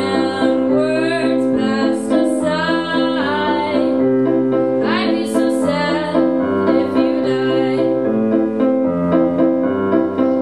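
A woman singing a slow song to her own accompaniment on a Casio electronic keyboard: held chords over a low bass note that changes about once a second.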